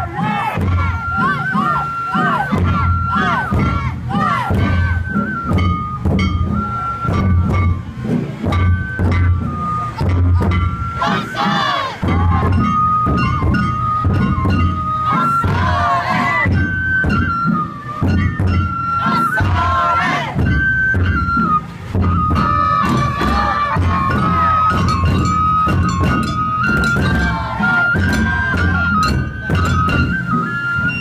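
Live Japanese festival music: taiko drums pounding a continuous beat, with a flute playing a melody of held high notes over them. Voices call out every so often, loudest about 12, 16 and 20 seconds in.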